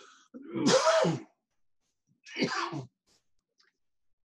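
A person sneezing twice: a louder sneeze about half a second in, then a shorter one about two seconds in.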